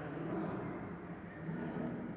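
Ballpoint pen writing on paper, a quiet scratching over a steady low room hum.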